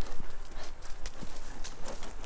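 Hooves of a racehorse walking on a dirt track: a series of clops, one at each step.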